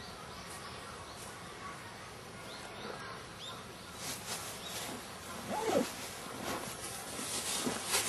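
Quiet outdoor park ambience: a steady background hiss with a few faint, short bird chirps, and some faint scattered sounds in the second half.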